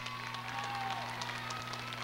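Audience applause in an arena: many scattered claps over a steady low hum.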